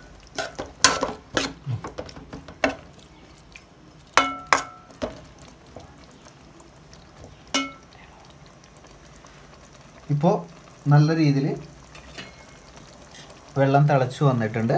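Metal spoon stirring a thick curry in a metal pot: a quick run of sharp clinks and scrapes against the pot, then two ringing knocks about four seconds in and another near eight seconds.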